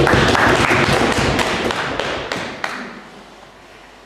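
A dense flurry of quick taps and knocks, loud at first and dying away over about two and a half seconds.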